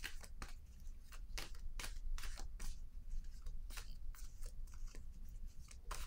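A deck of tarot cards being shuffled in the hands: an uneven run of short, crisp papery swishes, about three a second.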